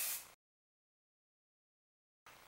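Aerosol hairspray hissing, cutting off abruptly about a third of a second in, followed by complete silence.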